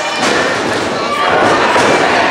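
A thud on the wrestling ring near the start, then crowd shouting.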